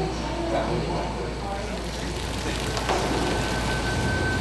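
Steady hum and rushing noise of brewhouse equipment running, with a low drone underneath and faint voices in the background; a thin steady whine comes in near the end.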